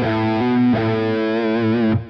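Distorted electric guitar playing a few sustained notes over a low held note. The notes change pitch twice early on, then the last note is held with vibrato. They demonstrate the Phrygian mode's lowered second above the root, set against the natural second.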